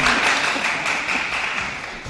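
Studio audience applauding, the clapping slowly dying away toward the end.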